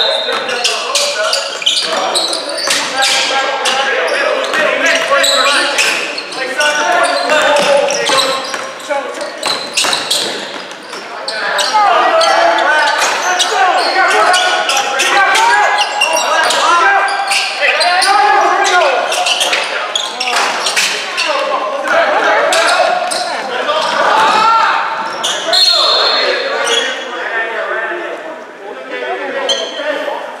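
A basketball dribbling and bouncing on a gym's hardwood floor during play, among the shouts and chatter of players and spectators in a reverberant gym. A short high whistle sounds briefly about 25 seconds in.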